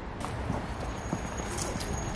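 Footsteps of people walking outdoors: soft, irregular taps over low outdoor ambience, getting busier towards the end.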